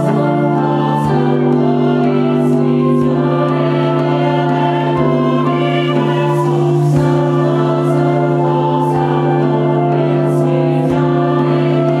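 Mixed choir singing a liturgical piece in long sustained chords over a held low note, accompanied by brass and flutes.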